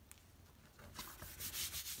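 A hand rubbing over a sheet of card to press it flat and stick it down. Quick, soft, dry rubbing strokes start about a second in.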